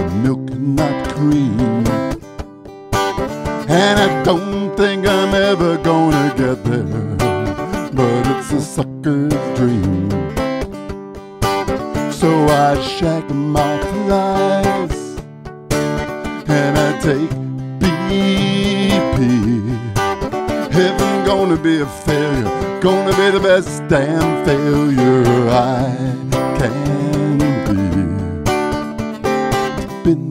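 Acoustic guitar strummed steadily, with a man singing a folk-style song over it.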